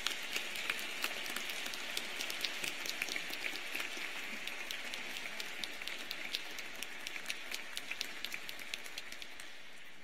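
An audience applauding: many hands clapping densely, tapering off near the end.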